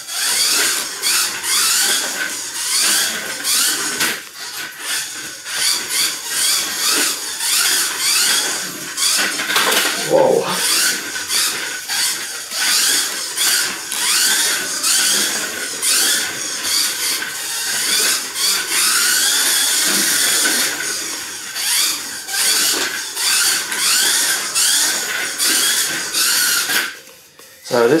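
Kyosho Mini-Z electric RC car driving laps: its small electric motor whines, rising and falling in pitch as the throttle is worked, with frequent clicks and taps throughout. The sound dips briefly just before the end.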